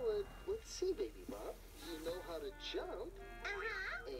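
Voices with background music from a children's TV show, heard through a television's speaker.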